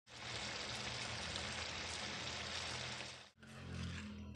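Chayote-root and pea curry sizzling and bubbling in a frying pan: a steady hiss with a low hum underneath. It cuts off abruptly a little over three seconds in, then returns more weakly.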